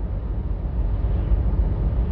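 Steady low rumble with an even hiss over it, with no distinct events.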